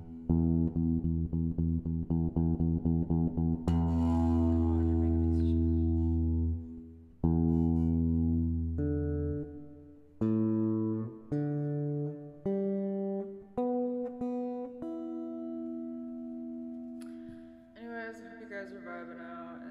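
Guitar being played without singing: a chord is strummed in quick repeated strokes for the first few seconds, then held and let ring, followed by single notes picked one at a time and a final held note that fades near the end.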